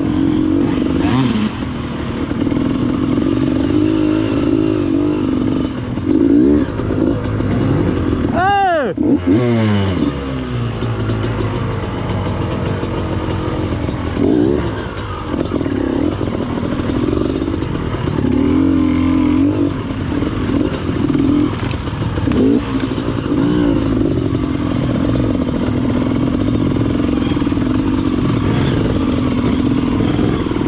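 KTM enduro dirt bike engine running at low speed, its revs rising and falling as the throttle is worked over rough, wet ground.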